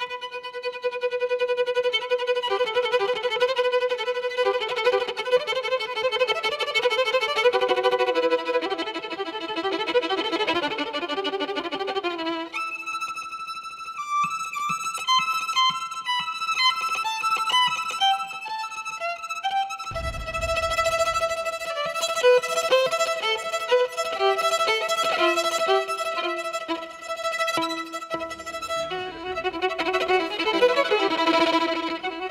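Solo violin playing a Kazakh melody, with held notes under a moving line at first, then a higher, quicker run of notes from about twelve seconds in. A brief low thud comes about twenty seconds in.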